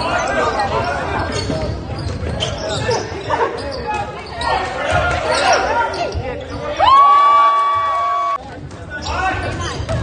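Basketball game sounds in a gym: a ball bouncing and players' voices echoing in the hall. About seven seconds in, a loud steady signal tone sounds for about a second and a half and cuts off abruptly.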